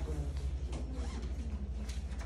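Pen scratching across notebook paper in short irregular strokes, over a steady low room hum.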